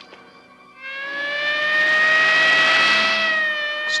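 Police car siren starting about a second in, rising in pitch and then holding a loud steady wail.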